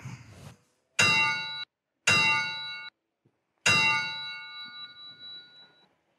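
A bell struck three times, about a second apart. The first two strikes are cut short, and the third rings out, fading over about two seconds.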